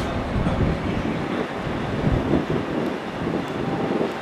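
Wind buffeting the microphone: an irregular, gusty rumble that rises and falls.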